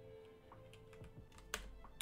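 Faint keystrokes on a computer keyboard: a few separate clicks, the sharpest about one and a half seconds in.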